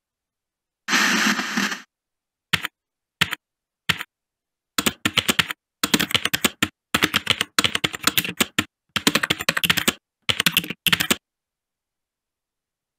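Typing sound effect laid over text being typed onto the screen. It begins with a burst of noise about a second long. A few separate keystrokes follow, then quick runs of clacking keys that stop shortly before the end.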